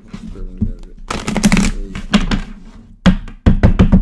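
A deck of tarot cards being handled and shuffled by hand, with a quick run of sharp taps in the last second. A little low muttering comes early on.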